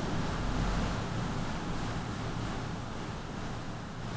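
Steady hiss of room noise with a low rumble underneath, a little stronger in the first second, and no distinct events.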